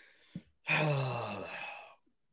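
A man's long voiced sigh: a quiet breath drawn in, then an exhale that falls in pitch and lasts just over a second.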